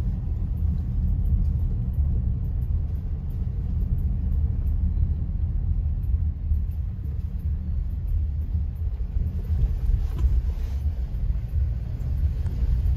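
Steady low rumble of a car's engine and tyres heard from inside the cabin while driving slowly on a narrow paved road.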